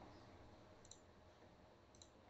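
Near silence: faint room tone with two small clicks, about a second in and near the end.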